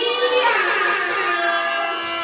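A girl singing into a microphone, holding one long steady note.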